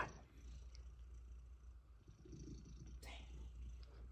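Domestic cat purring, a faint, low, steady purr from a cat lying on its side.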